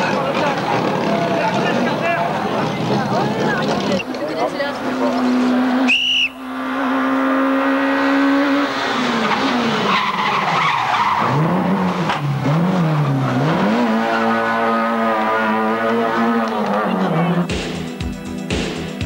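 Rally car engine at full revs on a tarmac stage, with tyre squeal; the engine note holds steady, dips and climbs a few times as the car brakes and changes gear, then holds high again. Spectator voices are mixed in during the first few seconds.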